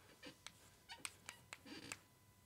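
Faint chalk writing on a blackboard: a handful of short, sharp taps and scrapes as a line is chalked up.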